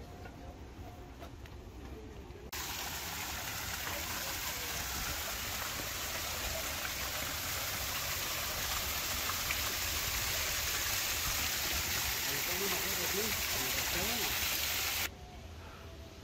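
Water pouring down an ornamental rock waterfall and splashing into a pool: a steady rushing hiss that cuts in about two and a half seconds in and stops abruptly about a second before the end. Before it there is only quieter open-air background.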